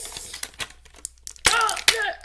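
Clear plastic toy packaging crinkling as it is handled, with a few sharp clicks.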